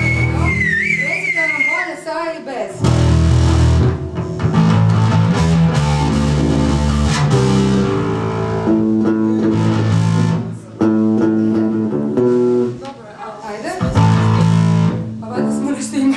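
Live pop music played on two electric bass guitars, a run of changing low notes. In the first two seconds a high, wavering tone glides up and down over them.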